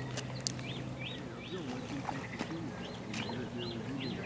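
A bird calling over and over, a run of about seven short rising-and-falling notes starting about a second in, with a few sharp clicks among them.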